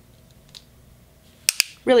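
Two quick sharp clicks, about a tenth of a second apart, from a plastic loose-powder jar handled in the hand, after a stretch of quiet room tone with one faint click.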